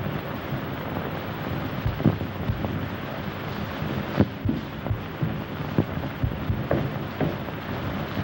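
Steady hiss of an old optical film soundtrack, broken by scattered irregular knocks and thuds, the sharpest about two and four seconds in.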